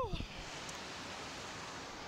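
A rider's 'woo!' shout trailing off right at the start, then a steady rush of wind on the microphone as the ride capsule hangs in the air.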